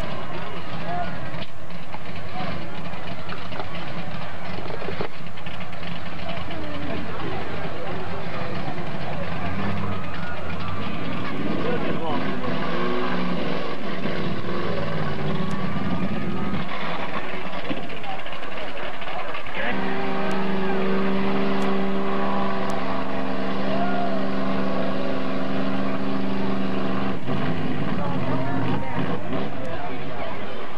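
Mud-bog truck on tractor tires, its engine running hard through a deep mud pit. The pitch rises and falls, then holds steady for several seconds past the middle. Voices are heard underneath.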